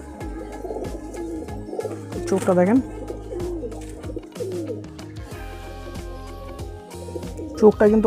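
Domestic pigeons cooing, with a few wavering low calls, over steady background music.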